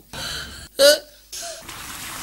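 A person's short, loud gasping cry just under a second in, rising in pitch, followed by a brief softer vocal sound, over a steady hiss.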